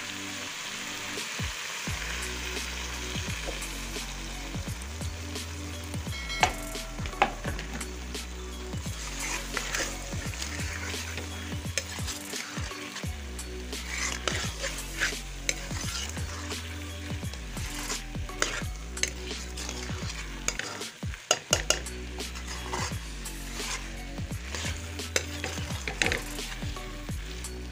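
Potatoes in spiced masala sizzling in a metal pot while a steel spoon stirs them, with frequent scrapes and clicks of the spoon against the pot. A few sharper knocks come about a quarter of the way in, and a quick cluster of them comes near the end.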